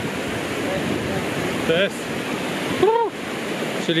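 Hot-spring water running steadily over shallow travertine cascades and pools, a continuous rush of flowing water.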